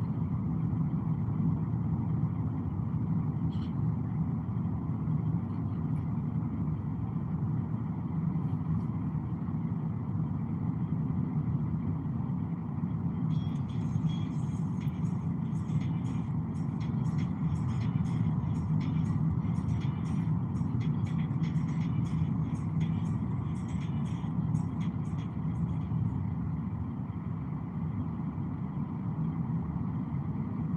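Steady low road and engine noise inside a moving car's cabin at traffic speed. About halfway through, a quick run of faint high ticks joins it for roughly twelve seconds.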